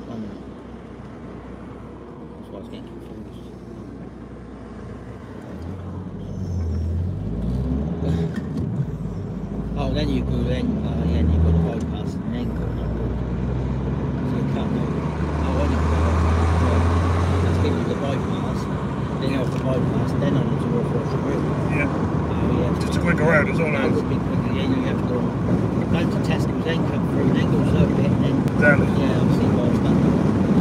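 Road noise inside a moving car's cabin. The engine note climbs in steps through the gears from about six seconds in, then holds, and louder steady tyre and road noise builds as the car reaches speed.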